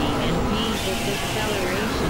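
Several audio tracks playing at once in a dense mix that stays at one level throughout, with gliding voice-like pitches layered over a wash of noise and low drones.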